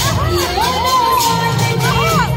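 Music for dandiya raas playing with a steady beat, under a crowd of dancers shouting and cheering, with rising-and-falling calls.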